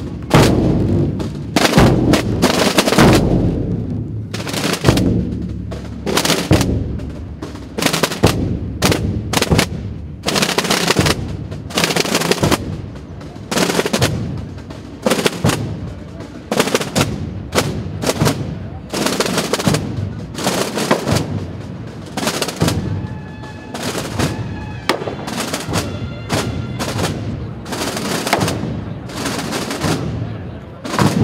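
A band of rope-tensioned Holy Week procession drums beating, a steady run of loud, sharp strokes. A faint held pitched note joins briefly near the end.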